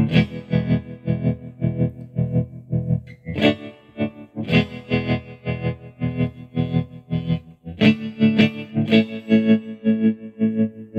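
Electric guitar chords played through a Zebra-Trem tremolo pedal on its "2 Molars" waveform, the volume chopped into a rhythmic pulse several times a second. Chords are struck afresh a few times, loudest near the end.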